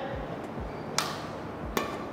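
Two sharp hits of a badminton racket's strings on a shuttlecock, about three quarters of a second apart, in a rally of drop shots.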